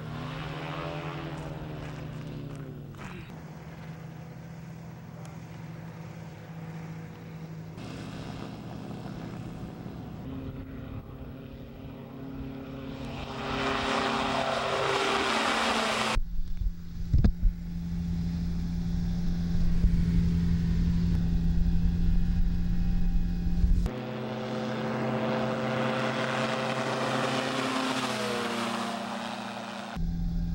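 Ultralight trike engines and propellers running, with the pitch bending up and down over the first few seconds. The sound builds to a loud run about halfway through, then holds steady and loud. It changes abruptly twice, and the pitch drops near the end.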